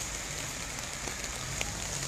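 Steady rain falling on a wet street, an even hiss with no break.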